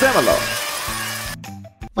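A hissing, sparkling celebration sound effect for a correct-answer reveal, fading out about a second and a half in, with a voice reading out the answer over its start. A short sung phrase begins near the end.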